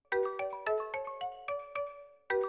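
Mobile phone ringtone playing a repeating marimba-style melody: a call ringing unanswered. The phrase stops near the end and starts over.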